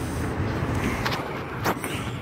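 Steady low rumble of outdoor background noise, with two brief clicks, one about a second in and one near the end.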